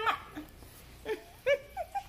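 A toddler's short, high-pitched squeals, several in quick succession in the second half, the loudest about a second and a half in.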